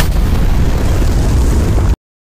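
A large explosion: a loud blast with a heavy low rumble, cutting off suddenly just before the end.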